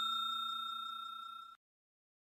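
Bell sound effect from a subscribe-button animation, its ring fading away and then cutting off suddenly about a second and a half in.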